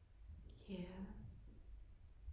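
A woman's soft, slow voice saying a single word about a second in, over a low steady room hum.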